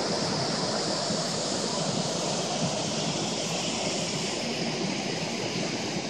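Nugget Falls, a large waterfall, pouring down a rock wall: a steady, even rush of falling water.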